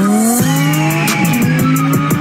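Car engine accelerating, its pitch climbing steadily, laid over music from the music video's soundtrack.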